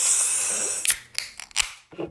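Aluminium can of IPA beer opened by its pull tab: a sudden pop and a hiss of escaping carbonation that fades over about a second, followed by a few light clicks.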